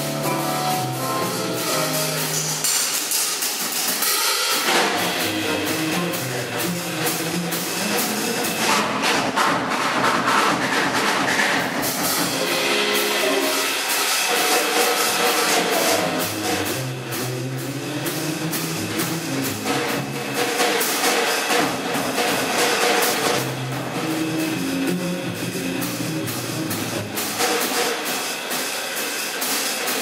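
Jazz trio of drum kit, double bass and stage piano playing, with the drum kit to the fore: cymbals and drums busy throughout over bass and keyboard lines.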